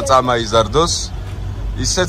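People talking, a voice in the first second and again just at the end, over a low steady rumble.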